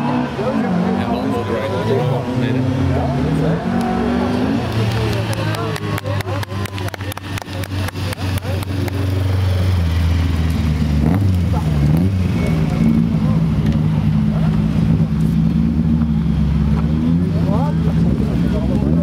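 Rallycross saloon cars racing past: engines revving and accelerating, rising and falling in pitch. A rapid run of crackling clicks comes in the middle. Then a louder, steady engine note follows as a car runs close by.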